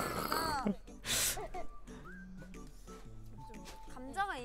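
Quiet background music and sound effects from a TV variety show, with a few short falling pitched sounds, a brief hiss about a second in, and a short steady tone near the end.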